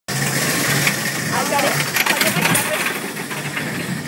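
Gerstlauer bobsled roller coaster train running fast along its steel track: a dense rushing of wind and wheel rumble, with a few sharp clatters. Wind buffets the microphone.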